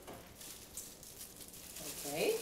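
Faint, irregular rustling and crinkling of a clear plastic bag around a camera lens as it is handled and unwrapped, with a short hum of a woman's voice near the end.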